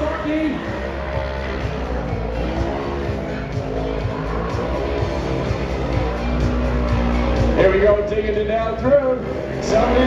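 Music from the track's public-address speakers over the engines of 1000 cc production-class UTVs racing on snow, louder in the last few seconds.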